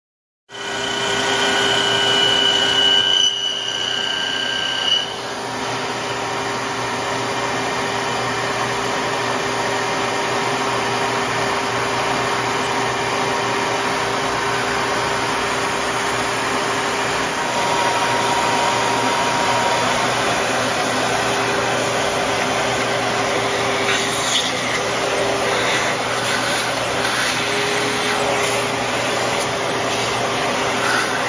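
Vertical milling machine running steadily as it mills material out of the inside of a rifle buttstock, a constant machine noise with a held hum; it starts abruptly about half a second in.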